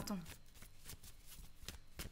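A tarot deck being shuffled by hand: a run of short card slaps and flicks, a few a second, at an uneven pace.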